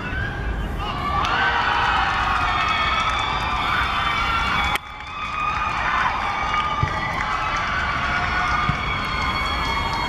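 Young voices cheering and shouting together as a goal goes in, the many high-pitched shouts overlapping. The cheering starts about a second in and briefly breaks off about five seconds in before going on.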